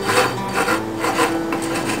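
A wooden skewer scraping along the seam of a steel tin can in repeated short strokes, working super glue into the joint between the two can halves.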